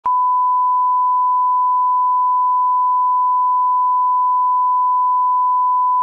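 A 1 kHz line-up tone, the reference tone that goes with colour bars: one loud, steady pure tone held unchanged, cutting off suddenly at the end.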